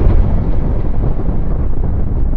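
Explosion sound effect: the deep, loud rumble of the blast holding steady.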